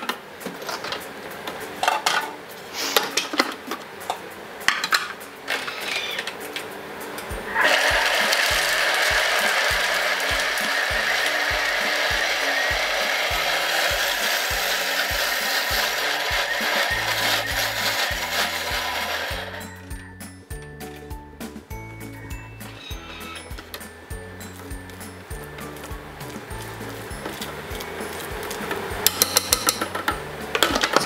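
Thermomix food processor blending at high speed: a loud, steady whir that starts about seven seconds in and cuts off sharply after about twelve seconds. Clinks of the steel bowl and lid come before and after it, over background music.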